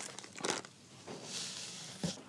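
Small plastic accessory bag holding a presser foot crinkling as it is handled and set down: a short crackle about half a second in, then a soft rustle near the end.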